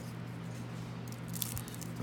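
Trading cards being handled: a faint rustle of card stock sliding in the hands, with a couple of light clicks about one and a half seconds in.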